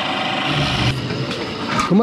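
Electric coconut scraper running steadily as a coconut half is pressed against its spinning serrated head, grating the flesh. The steady whirring cuts off near the end.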